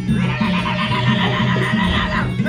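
Traditional Kun Khmer ringside fight music: a shrill reed pipe, the sralai, holds a long, sustained note over a steady, pulsing drum beat.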